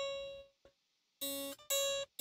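Electric guitar's top string, tuned down to C sharp, sounding the open note and its octave at the 12th fret, the interval used to check intonation. A ringing note fades out in the first half second, then after a pause come two short, abruptly cut notes, the lower one first.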